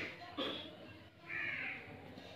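A crow cawing twice: one harsh call at the very start and another about a second and a half in, with a brief sharp sound between them.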